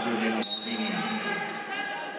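A referee's whistle blows once, a sudden single steady blast of just under a second starting about half a second in, over the echoing noise of an arena hall. It is the signal to restart the wrestling bout.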